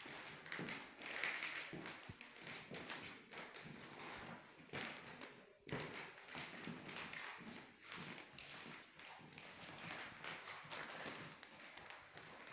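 Footsteps walking on a wooden parquet floor, about two steps a second.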